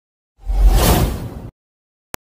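A whoosh sound effect with a heavy low rumble, starting about half a second in, lasting about a second and cutting off abruptly.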